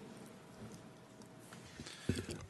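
Near silence: faint room tone in a meeting chamber, with a thin steady hum and a few faint clicks.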